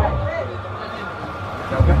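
A male football commentator's voice trails off, a little over a second of steady background noise follows, and his voice comes back near the end.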